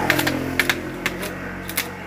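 Several sharp, irregular knocks of a wooden mallet striking bamboo slats as they are tapped into place in a woven bamboo panel, over a steady low hum.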